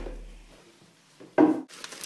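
The tail of a music track fades out, then a brief rub or knock about one and a half seconds in, from an object such as a picture frame being handled close to the microphone.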